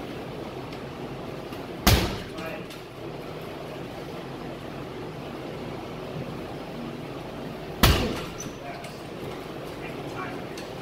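Two hard strikes landing on a coach's held pad, about six seconds apart, each a sharp smack that dies away quickly.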